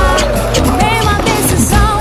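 Capoeira music: a song sung in Portuguese over berimbau, hand drum and hand-clapping.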